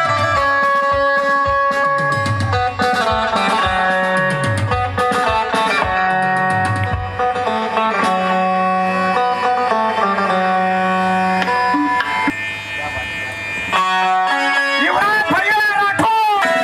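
Live qawwali music: harmonium with a plucked string instrument carrying the melody over stepping bass notes. Near the end a singer's voice comes in, gliding up and down on a long note.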